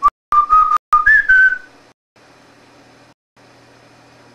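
A person whistling a short run of high notes: a few brief blips, then a longer note that jumps up and dips slightly, with breath noise on the microphone. Afterwards a faint steady hum remains.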